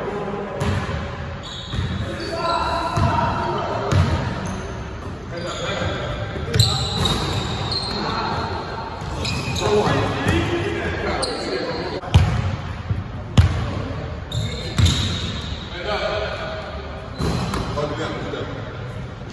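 Basketball bouncing on a hardwood gym floor in irregular thuds, the two sharpest about two-thirds of the way in, with players' voices calling out, all echoing in the gym.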